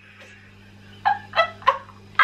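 Women laughing: after a quiet first second, three short, high-pitched laughing squeals in quick succession.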